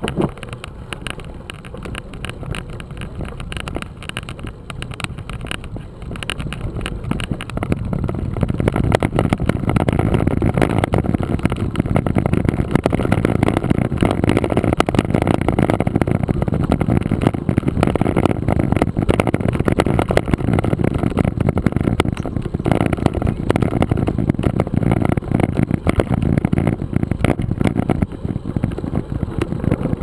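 Mountain bike rolling fast over a gravel dirt road: tyre rumble and rattling from the bike, with wind buffeting the camera's microphone. It gets louder about eight seconds in and stays loud.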